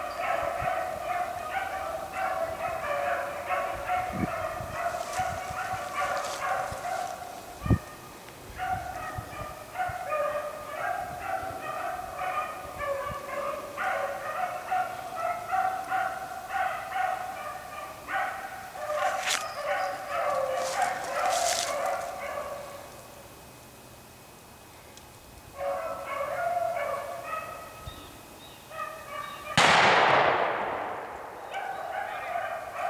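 A pack of beagles baying in full cry as they run a rabbit, the voices overlapping and breaking off in a lull for a couple of seconds about two-thirds of the way through before picking up again. It ends with a single loud gunshot.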